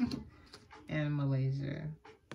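Speech: a person's voice saying a drawn-out word, with a short sound just at the start.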